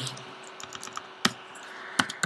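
Computer keyboard typing: a few separate keystrokes, the loudest a little after a second in and at the end, entering a number (15 metres) into a value field.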